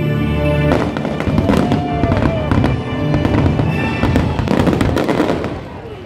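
Fireworks bursting and crackling in quick succession over a music soundtrack, the bangs thickening from about a second in and easing off near the end.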